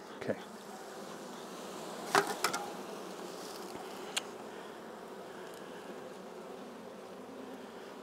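Honey bees buzzing steadily over the open frames of a hive, with a few short clicks about two seconds in and again near the middle.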